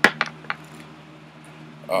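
Three sharp clacks of small hard objects knocking on a desktop within about half a second, the first the loudest.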